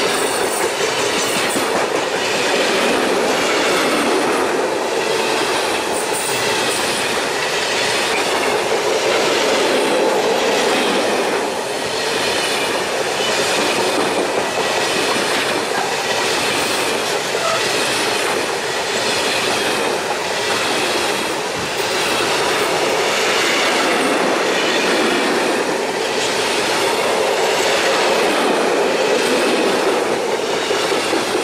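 Long freight train of loaded timber wagons rolling past close by: a steady loud rumble of steel wheels on the rails with a regular clacking as each wheelset passes.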